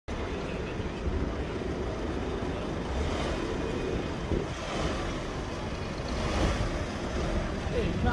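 Street traffic noise: a white Mercedes Sprinter van's engine runs as it creeps across the junction toward the microphone, with wind buffeting the microphone throughout.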